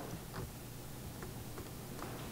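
A few faint clicks from a laptop being worked at the podium, over a low steady room hum.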